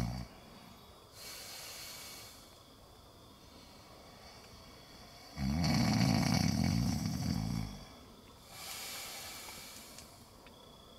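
A man snoring in his sleep: a soft breath out about a second in, one long loud snore from about five and a half to eight seconds, then another soft breath near the end.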